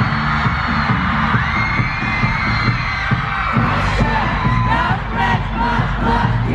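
Live pop concert music played loud over an arena sound system, with a heavy repeating bass line and singing, and the crowd cheering and singing along.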